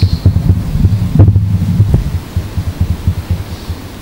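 Microphone handling noise: irregular low thumps and rumbling, loudest about a second in and fading toward the end.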